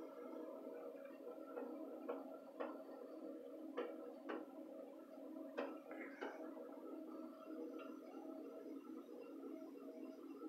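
Faint steady hum of a concrete pump truck's diesel engine running, heard through a closed window, with a few light, irregular clicks in the first half.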